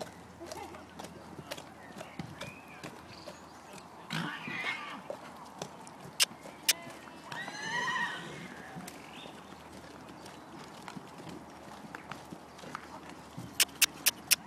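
Hoofbeats of a ridden horse cantering round a show-jumping course, with a few sharp knocks, the loudest a quick run of four near the end.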